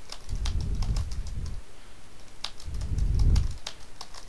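Computer keyboard keys tapped in a quick, steady run as a home-row 'asdf ;lkj' drill is typed. A low rumbling sound swells twice, for about a second each time.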